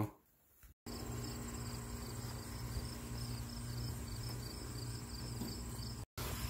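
High-pitched insect chirping in a regular, even pulse, starting about a second in, over a steady low hum.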